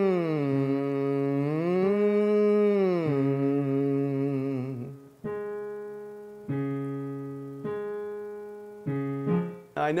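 A man hums a held 'ng' with his tongue stuck out, a tongue-tension exercise, the pitch sliding down, back up and down again. About five seconds in the voice stops and a keyboard plays a series of chords alone, each one fading away.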